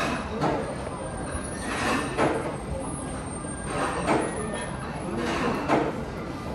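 Restaurant dining-room ambience: a steady low hum with short bursts of voices now and then.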